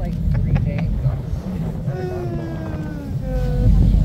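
Steady low rumble of a tour boat's engine under way, mixed with wind buffeting the microphone, which swells near the end. A few light handling clicks come in the first second.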